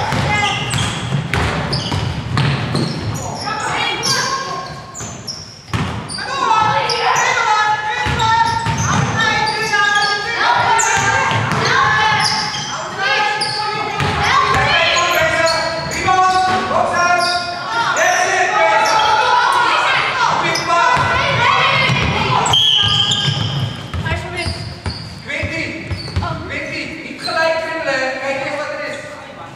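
Basketball dribbling and bouncing on a wooden sports-hall floor, under shouting voices of players and spectators in the hall. About three-quarters of the way through, a referee's whistle blows once for about a second.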